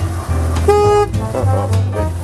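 A single short horn toot from a golf cart, held at one pitch for about a third of a second, a little under a second in, over background music.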